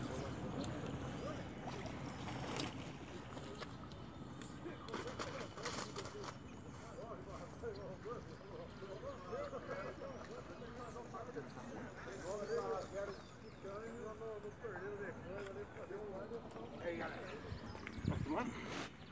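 Faint, indistinct voices over low outdoor background noise.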